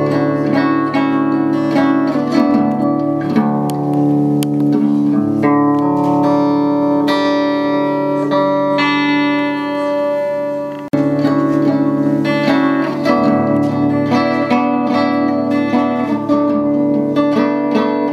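Solo steel-string acoustic guitar played with the fingers, a steady run of plucked notes. Near the middle a chord is left ringing and fades, then after a brief break the picking starts again.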